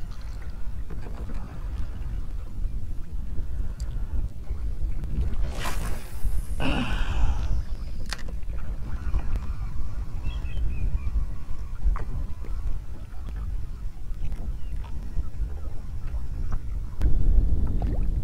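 Steady low wind rumble on the camera microphone over a kayak on choppy shallow water. About six seconds in comes a cast: a quick swish and the falling whir of a baitcasting reel's spool paying out line.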